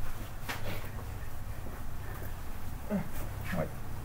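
Whiteboard eraser wiping marker off a whiteboard, a few short rubbing strokes, the last two squeaky.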